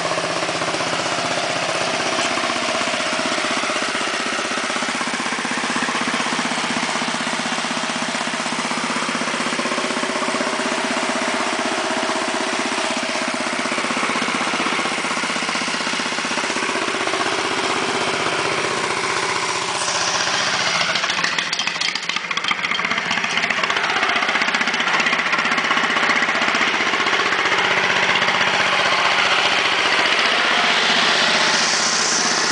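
Small garden-tractor engine of a Wheel Horse garden tractor running steadily; about twenty seconds in its note shifts and it grows a little louder.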